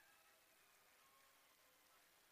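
Near silence, with only a faint hiss.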